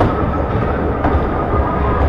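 Bumper car rumbling steadily as it rolls and turns across the metal floor of the track, heard from on board, with a sharp click at the start.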